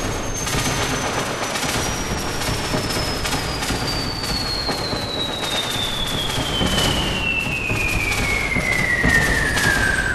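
Generative VCV Rack modular synth patch, its Elements physical-modelling voices driven by Quantussy Cells: a dense, noisy crackle of irregular sharp hits, over which a high whistling tone glides steadily down in pitch and grows louder. A second falling tone enters near the end.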